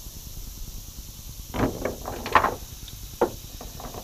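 A large, heavily weighted cast net being gathered and handled: a few short rustling bursts around the middle and a single sharp knock near the end, over a steady low rumble.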